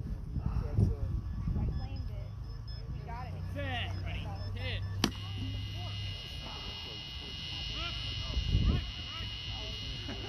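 A sharp crack about five seconds in as the bat hits the beeping beep baseball, followed by a steady electronic buzz, typical of a beep baseball base buzzer switched on for the runner. Before the hit the ball's beeps can be heard faintly.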